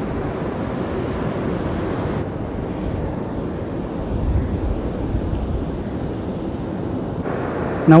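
Wind blowing across the microphone with surf in the background: a steady low rush. Its upper hiss drops away for several seconds in the middle.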